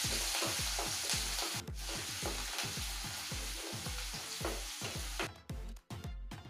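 Garlic, green chillies and curry leaves sizzling in hot oil and chilli masala in a nonstick pan, stirred with a wooden spatula. The sizzling cuts off shortly before the end.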